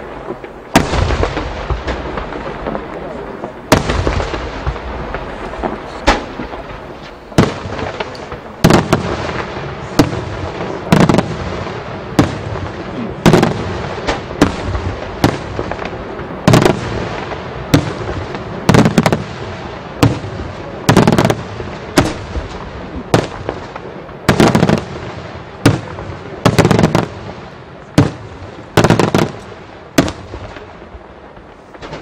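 Daytime fireworks display: aerial shells bursting with loud bangs about once a second, each followed by crackle and rolling echo.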